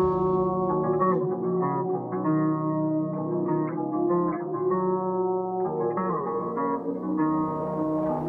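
Trap-style instrumental beat in B minor in a stripped-down section: a plucked guitar melody plays on its own, with no drums or deep 808 bass. A rising whoosh begins to build near the end.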